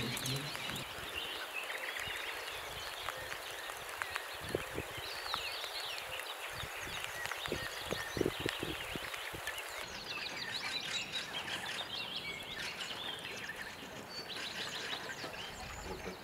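Several songbirds chirping and singing steadily, with a run of short knocks or crackles between about five and ten seconds in.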